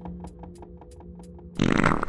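Cartoon soundtrack: a steady music bed under a quick run of light ticks, about eight a second, then a loud, short, buzzy comic sound effect near the end.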